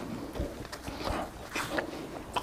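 Close-miked chewing: irregular wet smacking mouth sounds from a man chewing a mouthful of soft bread roll, picked up by a lapel microphone.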